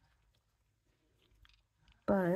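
Near silence: room tone, with a few faint small ticks near the end.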